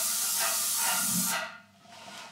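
Airless paint spray gun with a Graco Cleanshot valve spraying: a steady, loud hiss of atomised paint that cuts off suddenly about one and a half seconds in as the trigger is released.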